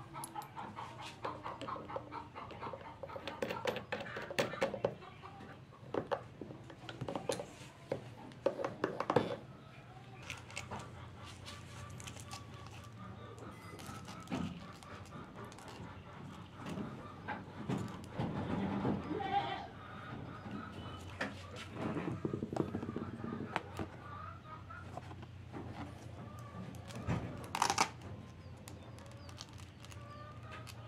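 Light knocks, taps and clicks of workshop parts being handled on a plywood bench, a sanding backing pad picked up, turned over and set down, over a steady low hum.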